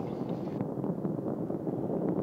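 Distant, steady rumbling roar of the Space Shuttle climbing under its two solid rocket boosters and three liquid-fuel main engines.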